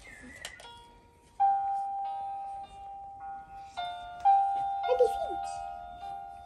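Cuggle baby swing chair's built-in music playing a simple chiming electronic lullaby, starting about a second and a half in. A short voice sound comes in near the end.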